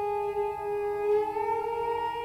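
Bowed cello holding a long sustained note that slides up in pitch about a second in, with a lower note joining beneath it.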